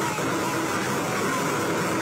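A large outdoor crowd's steady din of many voices talking and shouting at once, with no pauses.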